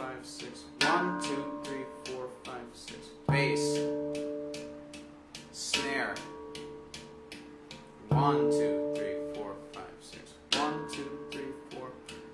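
Handpan played in a steady groove. A deep note on the central ding is struck and left ringing about every two and a half seconds. In between are quick, very soft ghost-note taps on the rim of the steel shell, counted in sixes.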